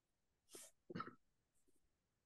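Near silence broken by a short breathy sound about half a second in, then a brief voiced sound from a person a moment later.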